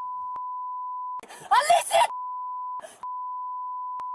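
A steady, high-pitched censor bleep covers the audio. About a second in it breaks off for a second of loud, high-pitched yelling, and it breaks again briefly near three seconds.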